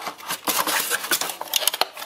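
Cardboard packaging being handled and pulled open: rustling and scraping with a run of sharp clicks and taps.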